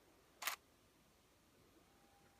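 DSLR shutter firing once about half a second in, a short sharp click, as a motorised pan-tilt head triggers one frame of a panorama sequence. Near the end a faint steady whine starts as the head's motor moves the camera on to the next position.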